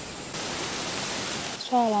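A steady hiss that steps up a little about a third of a second in and then holds even. A voice starts speaking near the end.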